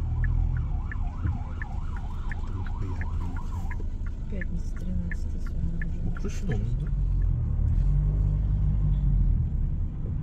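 Low steady rumble of a car interior as it creeps through traffic. An emergency vehicle's siren warbles quickly up and down for the first few seconds, then fades out. A light ticking about three times a second runs through the first half.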